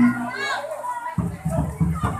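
Children shouting and chattering together. About a second in, a low drum beat of the jaranan music starts up, about three beats a second.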